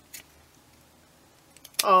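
A single short snip of scissors cutting into card stock just after the start, cutting a slit from a punched hole to the card's edge; then a quiet stretch with a few faint clicks near the end.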